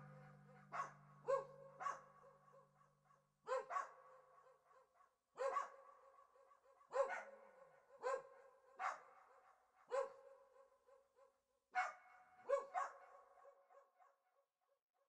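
A small dog barking: about a dozen short, high barks at irregular intervals, some in quick pairs. The low last notes of a song fade out under the first few barks.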